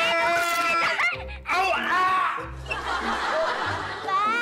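A long, held high-pitched cry, followed by laughter and other vocal sounds over background music.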